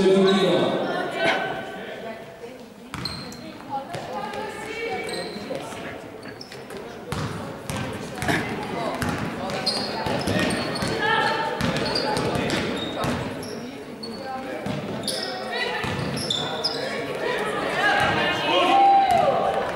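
A basketball bouncing on a sports hall floor during live play, with players' and spectators' voices calling out, all echoing in the large hall.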